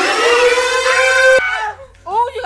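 A loud, long scream held on one slightly rising note, with other shrieking voices over it, cut off abruptly about one and a half seconds in, during rough play as a player is shoved off the bed.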